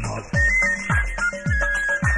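Cosmic-style electronic dance music: a steady kick-drum beat, a little under two beats a second, under a high, beeping synthesizer melody.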